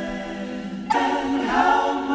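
A vocal group singing in harmony, holding a chord and then moving to a new, louder chord about a second in.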